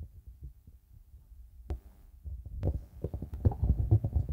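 Handling noise from a handheld microphone: irregular low thumps and bumps with one sharp click in the middle, growing thicker and louder in the last second or so.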